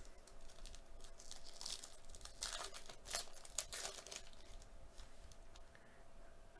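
Foil wrapper of a Topps Update Series baseball card pack being torn open and crinkled by hand. The faint crinkling is densest in the middle and dies away toward the end.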